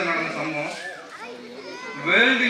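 A man speaking through a public-address system, trailing off into a pause filled by children's voices in the audience.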